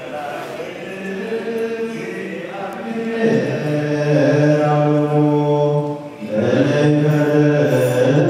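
Men's voices chanting an Eritrean Orthodox Tewahedo liturgical hymn together on long held notes. The chant grows louder and settles onto a lower note about three seconds in, breaks off briefly near six seconds, then goes on.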